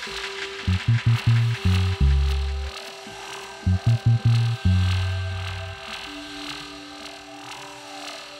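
Instrumental electronic beat: deep bass notes in short stabs and longer held notes under sustained higher tones, with the bass dropping out for the last two seconds.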